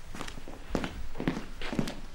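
A man's footsteps walking steadily across an office floor, about two steps a second.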